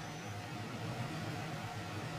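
Steady low background hum with a faint hiss, holding level throughout.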